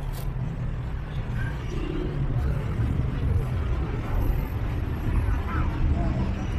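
Outdoor night-market ambience: a steady low rumble with faint scattered voices of passers-by.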